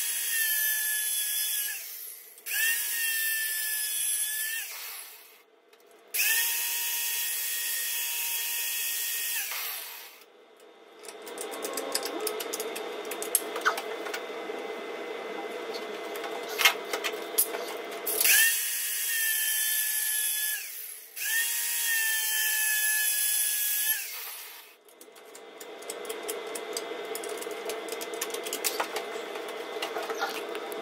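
Angle grinder cutting metal angle bar in five runs of two to four seconds each, its motor whine rising briefly at each start. Clicks and knocks from handling the metal fall between the runs.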